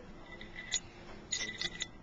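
Light metallic clicks as the removed autoclave temperature gauge and its fittings are handled: one click, then a quick run of four or five more near the end.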